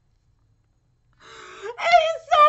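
Dead silence for about a second, then a woman's breathy gasp rising into a high-pitched excited vocal exclamation near the end.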